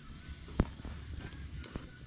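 A single sharp knock about half a second in, over faint crackling from a campfire and a low rumble.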